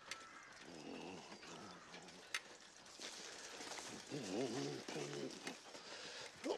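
Sheep bleating in a quivering, wavering voice, with the loudest bleat about four seconds in, over thin bird chirps. There is a single sharp click a little past two seconds.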